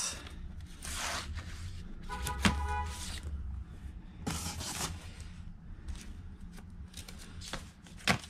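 Cardboard LP record jackets being flipped through by hand in a plastic crate, sliding and rubbing against each other in several short swishes with light taps. A brief pitched squeak about two seconds in.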